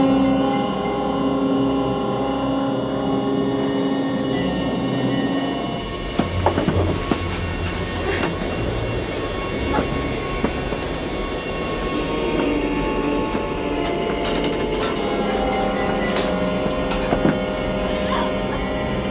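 Film score with long held tones, joined about six seconds in by a loud, steady roar of helicopter and jet engine noise and rushing air.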